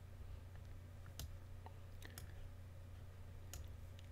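A handful of sharp, separate computer mouse clicks, irregularly spaced, over a faint steady low hum.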